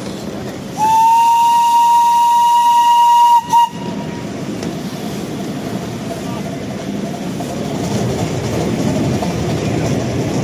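Miniature steam locomotive's whistle: one long steady blast of about two and a half seconds, then a short toot, a warning as the train nears an underpass. After it comes the steady running noise of the little train rolling on the rails, growing a little louder near the end.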